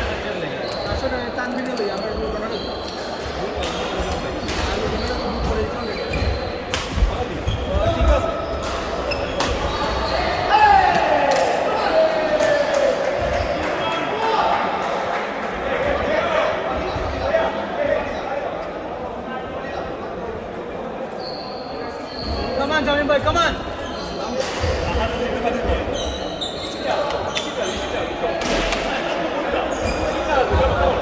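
Reverberant sports-hall bustle of indistinct voices and shouted calls, broken by scattered sharp knocks of a ball striking bat and floor.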